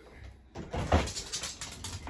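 A door being opened: handle and latch clicks and a knock about a second in, over a low rumble.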